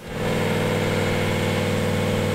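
Toyota 1VD twin-turbo V8 diesel in an FJ45 Land Cruiser held at steady high revs during a burnout, the rear tyres spinning on concrete. The loud engine note comes in sharply at the start and holds an even pitch.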